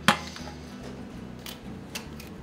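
A single sharp knock just after the start, then quieter handling with two light clicks, about a second and a half in and near the end: a lobster being handled on a plastic cutting board.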